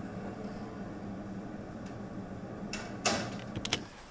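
Wooden office door swinging shut on its overhead closer, latching with a sharp clack about three seconds in, followed by a couple of small clicks, over a steady low room hum.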